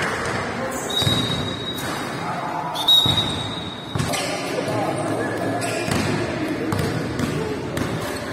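Basketballs bouncing on a hardwood gym floor, echoing in a large hall, with voices talking over the dribbling. Two long, high squeaks come in the first half.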